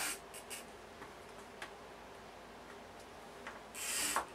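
Tailor's chalk drawn along the edge of a quilter's ruler on fabric, marking lines: faint short marking strokes, several in the first half-second, then a few light ticks and rubs.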